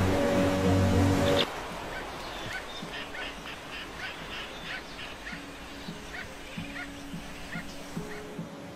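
Music with low held notes cuts off suddenly about a second and a half in. A flock of seabirds follows, calling with many short, repeated rising cries, and soft plucked-guitar notes begin about five seconds in.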